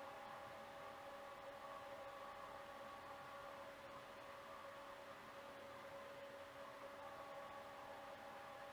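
Near silence: room tone with faint hiss and a faint steady hum.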